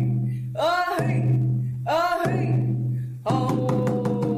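Traditional Coast Salish drum welcome song: a voice singing phrases over the hand drum, breaking about three seconds in into a fast run of drumbeats under a long, slowly falling sung note.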